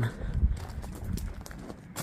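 Footsteps crunching on a gravel path, a string of short uneven crunches, with a low rumble about half a second in.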